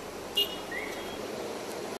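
Street traffic ambience: a steady wash of traffic noise, with a brief high chirp about half a second in.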